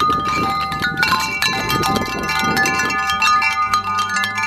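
Metal tube wind chimes struck repeatedly, several clear tones ringing on and overlapping one another.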